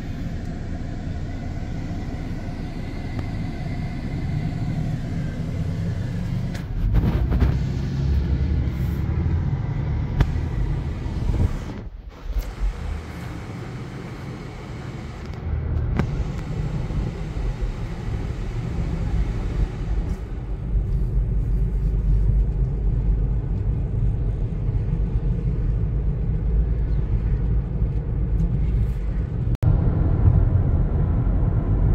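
Car cabin road noise while driving: a steady low rumble of tyres and engine. It shifts abruptly in level and tone a few times, with a brief dip about twelve seconds in.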